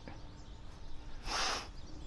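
Faint steady hum of a distant electric RC trainer plane's motor and three-blade propeller, with a brief soft hiss about a second and a half in.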